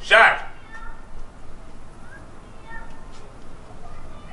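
A single short, loud, high-pitched cry right at the start, then only faint, scattered sounds.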